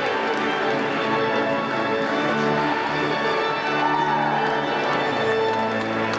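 Organ music, held chords changing every second or so, played as a recessional.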